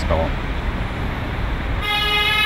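A vehicle horn sounds one long, steady note, starting near the end, over a low street rumble.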